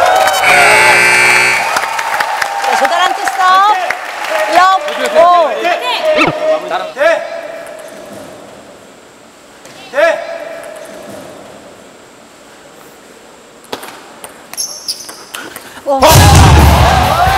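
Voices calling out over a gym crowd, with a short steady electronic tone about half a second in, dying down to a hush. Near the end, a table tennis ball clicks quickly back and forth off bats and table as a rally begins.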